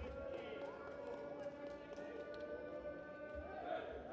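Faint sports-hall ambience: distant indistinct voices over a steady hum of several held tones, with a soft low thump late on.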